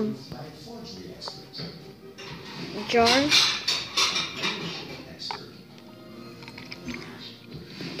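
Faint background music, and about three seconds in a quick cluster of clicks and knocks from a plastic juice bottle and paper cup being handled as the bottle is tilted to pour.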